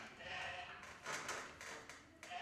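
Faint, quiet speech with a few light taps around the middle.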